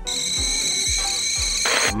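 Cartoon steam sound effect: a steady, high whistling hiss over background music with a soft low beat. It stops near the end, as the voice comes back in.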